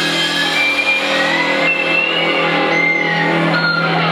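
Rock band's electric guitar and bass letting a loud chord ring out as a steady low drone, with high whining guitar tones sliding up and down in pitch and no drumbeat.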